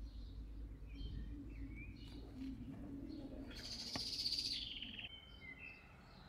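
Small birds chirping with short, high calls. About three and a half seconds in comes one louder, rapid trill lasting about a second, dropping in pitch at its end. A faint steady low hum runs beneath.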